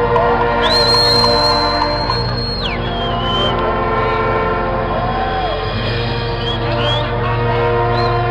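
Brass marching band playing held chords over a drum beat. Near the start a single high whistle tone is held for about two seconds, then drops away.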